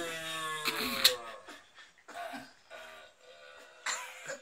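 A man imitating a red deer stag's rutting roar by voicing into a plastic Coca-Cola bottle used as a resonator: a long call falling in pitch fades out in the first half second, then a sharp click about a second in and a few short, quieter calls.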